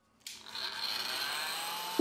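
Hot-air heat gun blowing onto a phone's back cover: a steady rushing hiss that starts suddenly a quarter second in, with a faint rising whine.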